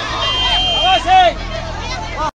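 Several people shouting over one another in a scuffle, the loudest shout a little past the middle. A brief high steady tone sounds for most of a second near the start, over a steady low hum.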